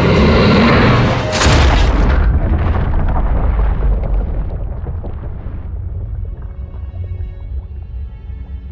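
Film sound design: a heavy underwater boom about a second and a half in as a great white shark slams onto the seabed, followed by a low rumble that slowly dies away. The film's score plays underneath, and held music tones take over near the end.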